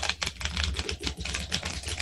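A deck of playing cards being shuffled by hand: a rapid run of crisp clicks over a low rumble.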